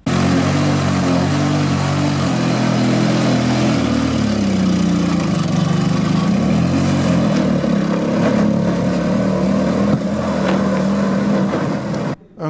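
Engine of a homemade motorized tricycle running as it is driven off. Its pitch drops about four seconds in, then rises again and holds steady.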